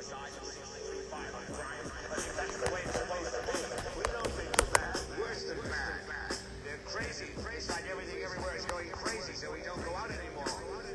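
A hip hop beat played live from a handheld sampler, with two sharp clicks about halfway through.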